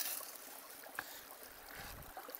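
Water running steadily through a gold-panning sluice box and over its riffles, set to a slow, gentle flow. One faint click about a second in.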